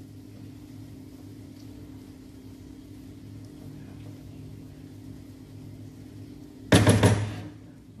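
A steady low hum, then a loud, brief clatter of cookware about seven seconds in as the frying pan and wooden spoon are handled on the gas stove.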